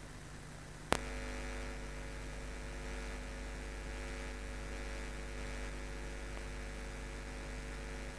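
Electrical mains hum on the audio line: a click about a second in, then a steady low hum with several pitched overtones.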